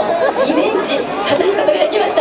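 Chatter of many voices talking over one another, with no single clear speaker.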